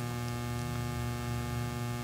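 Steady electrical mains hum picked up in the audio feed: a low buzz with many evenly spaced overtones, unchanging in level.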